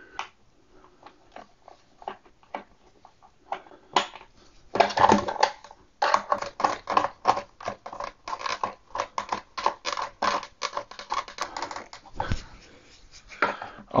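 Screwdriver turning a nylon toilet-seat bolt in its plastic hinge: scattered clicks and scrapes, then a fast run of small plastic clicks for several seconds from a little before halfway.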